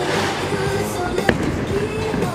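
Bowling alley din with background music playing, and one sharp knock a little past halfway through.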